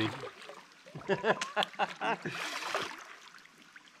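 Kayak paddle blades dipping and splashing in slow river water, with one louder splash about halfway through.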